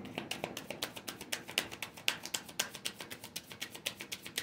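A deck of Light Seer's Tarot cards being shuffled by hand: a quick run of crisp card clicks, about ten a second.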